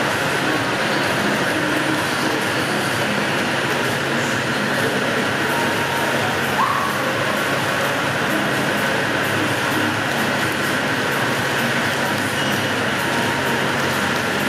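Steady, echoing din of an indoor swimming pool hall during a freestyle race: swimmers' splashing mixed with the hall's general background noise. One short rising chirp about halfway through.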